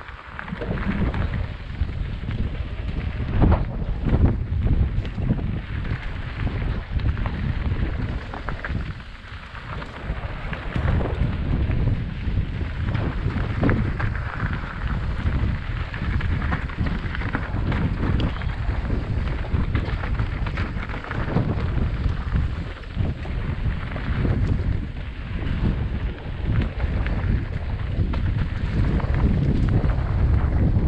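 Wind buffeting a helmet-mounted camera's microphone during a mountain-bike descent, with tyres crunching over a dirt and stone trail and frequent knocks and rattles from the bike over bumps. It eases briefly about nine seconds in.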